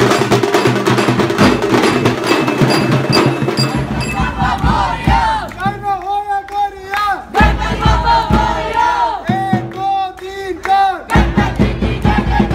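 Procession drums played with sticks beat a fast, dense rhythm that stops about four seconds in. After that a group of men chant and shout in unison in repeated phrases, led by one caller, with occasional drum strokes between the phrases.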